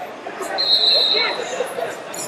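A referee's whistle blows once, a single steady high-pitched blast of under a second starting about half a second in, over the chatter of a crowded, echoing hall.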